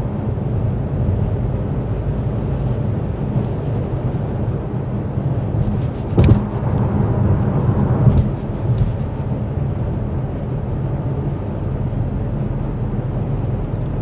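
Cabin noise of a 2024 Buick Encore GX Avenir cruising at 55 mph: steady low road and tyre rumble with wind and engine hum, measured at 58.4 decibels. A short thump about six seconds in.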